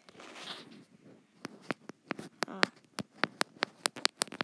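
A run of sharp taps on an iPad's glass screen, starting about a second and a half in and coming faster, about four a second near the end.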